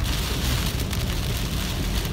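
Heavy rain beating on a car's roof and windshield, heard from inside the cabin, over the steady low rumble of the car driving on a wet road.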